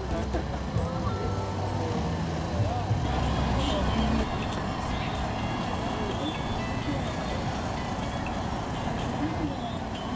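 Distant, indistinct talking of people in the background over a steady low rumble, which eases off about four seconds in.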